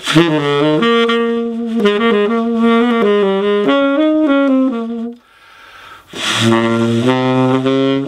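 Yanagisawa tenor saxophone playing an improvised jazz line of quick, distinct notes. About five seconds in it breaks off briefly for a breath, then starts a new phrase lower down.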